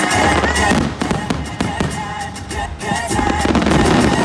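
Loud projection-show soundtrack music with a heavy bass beat and many sharp percussive hits, heard through outdoor park speakers.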